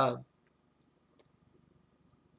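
A man's hesitant "uh" trailing off in the first quarter second, then a pause of near silence with a few faint, short clicks.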